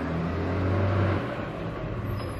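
Rubbish truck's engine running, a low rumble that drops off a little over a second in.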